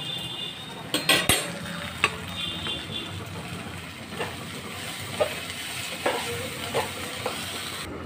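Food sizzling in a pan while a spatula stirs it, knocking and scraping against the pan. A loud clatter of several knocks comes about a second in, then single knocks roughly once a second.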